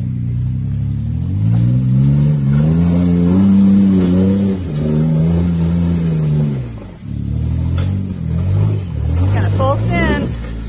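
Rock-crawling Jeep's engine revving in long rises and falls as it climbs over rock ledges, with a short drop in revs about seven seconds in before it picks up again. A few brief high squeaks near the end.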